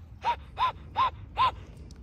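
White domestic duck panting: four short notes in a row, about three a second, each rising and then falling in pitch.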